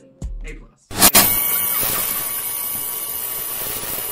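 About a second in, a sharp hit opens a steady wash of static-like hiss, an editing transition sound that leads into the outro music.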